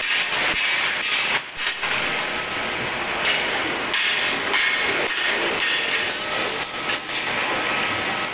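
Stick (arc) welding crackling and hissing steadily on the steel frame, with scattered metal knocks.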